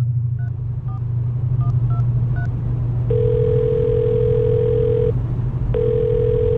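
A mobile phone dials a number: a quick run of about six keypad tones, then a long steady ringing tone on the line for about two seconds, and a second one starting just before the end. A low steady rumble of the car cabin runs underneath.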